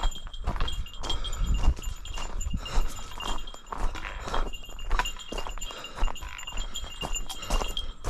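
Footsteps crunching on a gravel trail at a steady walking pace, with a small bell jingling along with the steps.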